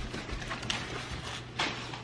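Scattered light knocks and rustles of handling as a large flat-screen TV panel is lifted out of its packaging, with a sharper knock near the end, over a low steady hum.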